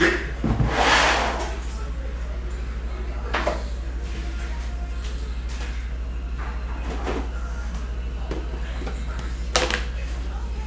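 Cardboard card boxes handled and moved on a table: a rustling bump about a second in, then a few scattered knocks and clicks, over a steady low hum.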